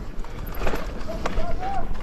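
Mountain bike clattering over rough trail ground with repeated sharp knocks. In the second half come three short wordless vocal sounds, each rising and falling in pitch.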